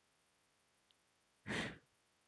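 Near silence broken once, about one and a half seconds in, by a short breathy sigh from a person.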